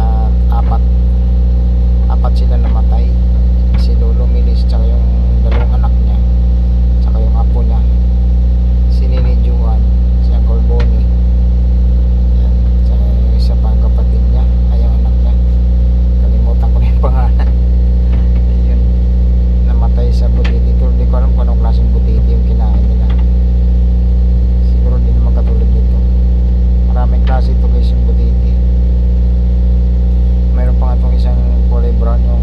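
A steady, unchanging low engine or motor drone, with voices speaking now and then over it.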